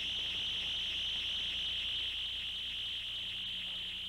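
A steady, high-pitched chirring drone, like an insect trill, holding level throughout, with a low steady electrical hum beneath it.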